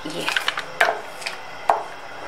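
A wooden spatula knocking and scraping against a steel saucepan while stirring thickened mango jam: about four sharp knocks, roughly half a second apart.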